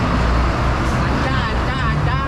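A large vehicle's engine idling, a steady low hum, with people talking over it in the second half.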